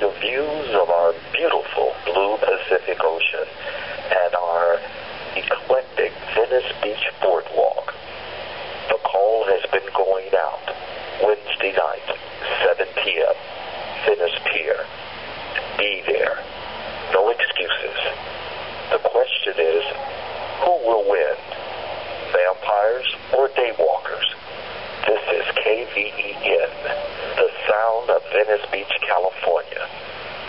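A voice talking almost without pause, thin and tinny with no bass, like speech heard over a radio or small speaker.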